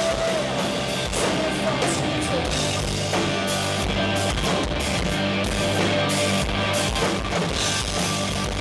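Live rock band playing an instrumental passage on two electric guitars, bass guitar and drum kit, with cymbal and drum strokes over a steady bass line. The last sung word of a vocal line ends the singing right at the start.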